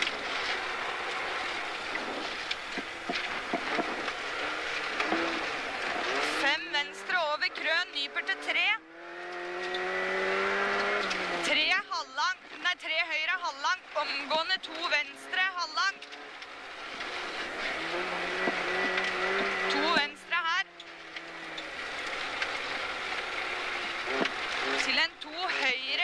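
Rally car engine heard from inside the cabin, pulling up through the revs several times as the car accelerates on a snowy stage, with spells of quickly changing revs as the driver lifts and shifts between the pulls.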